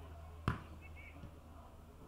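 A single sharp thud of a boot kicking an Australian rules football, about half a second in.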